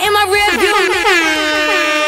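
DJ air horn sound effect in a dancehall mix: fast repeated horn blasts that glide down in pitch and settle into one held, pulsing tone. The bass beat underneath drops out about a second in.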